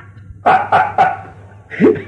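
A man coughing three times in quick succession: short, hard coughs about a quarter second apart.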